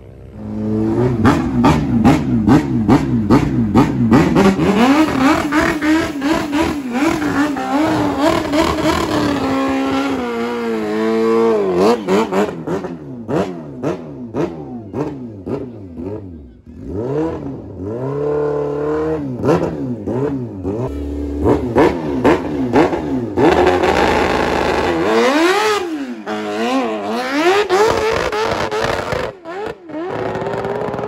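A motorcycle engine on a drag strip revving hard, its pitch jumping rapidly up and down in quick bursts at the start line. Near the middle it launches, and the pitch climbs and drops repeatedly as it pulls up through the gears.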